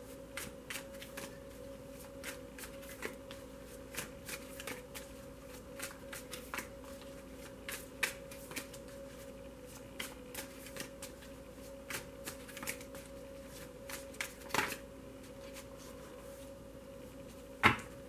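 A tarot deck being shuffled by hand: irregular soft clicks and slaps of cards sliding against each other. The loudest knock comes near the end, as the deck is set down on the cloth-covered table, over a faint steady hum.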